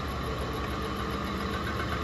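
Distributor test machine's electric drive motor running steadily, spinning an HEI distributor at about 900 RPM, a steady mechanical hum.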